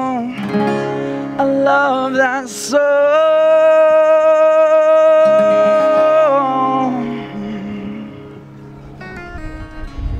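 A male voice sings a long held note over a strummed acoustic guitar at the close of the song. The voice stops about two-thirds of the way in, and the guitar rings on more quietly.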